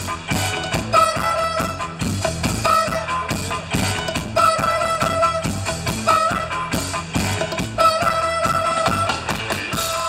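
Live band playing an instrumental stretch: a steady driving beat with bass and percussion under a high melody line in long held notes of a second or so, repeating every few seconds.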